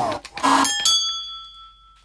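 Sound-effect sample of a champagne glass being struck: a short burst of noise, then one sharp hit that rings with several clear high tones, fading over about a second.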